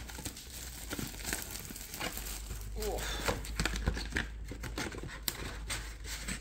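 Crinkling plastic wrap and packaging being torn and handled, with many small irregular clicks, as a sealed box of trading-card mini tins is opened.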